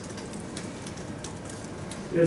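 Steady room hiss in a pause between speech, with faint, scattered light clicks.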